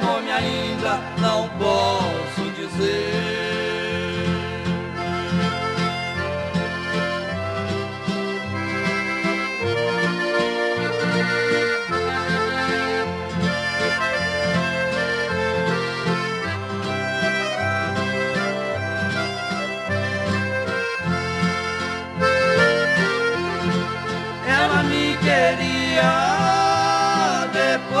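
Instrumental break of a Brazilian música caipira waltz, with an accordion carrying the melody over a steady bass accompaniment. Singing comes back in near the end.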